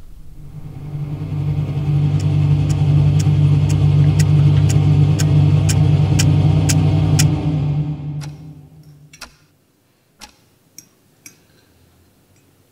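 A robot's internal motor as a sound effect: a steady mechanical hum that swells in, with a clock-like tick about twice a second, standing in for the android's heartbeat, then fades away. A few light clicks of cutlery on plates come near the end.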